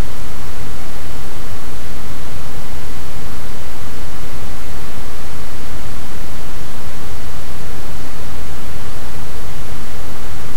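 Loud, steady hiss of recording noise, even from low to high pitch, with nothing else heard over it.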